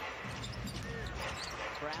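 Basketball game broadcast sound: arena crowd noise with a basketball being dribbled on the hardwood court, and faint commentary voice.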